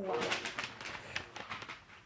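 Sheets of notebook paper rustling and crinkling as they are handled and raised, a quick run of crackles that thins out toward the end.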